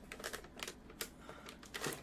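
Faint crinkling and clicking of a cardboard-and-plastic firework package being grabbed and handled: a scatter of small irregular clicks, with a slightly louder handling noise near the end.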